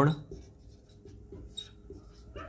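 Marker pen writing on a whiteboard: a series of faint, short scratching strokes.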